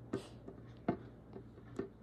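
Light plastic clicks and taps as a small plastic figure with a clear plastic dome is handled and turned, three sharper clicks a little under a second apart with fainter ones between.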